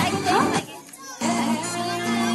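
Music with children's voices over it. The sound drops away suddenly about half a second in, and the music comes back about a second later with steady held notes and a beat.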